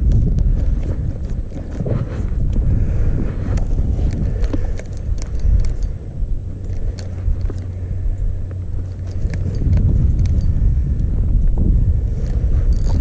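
Wind buffeting the microphone in an uneven low rumble, with scattered light clicks and knocks from a spinning rod and reel being worked.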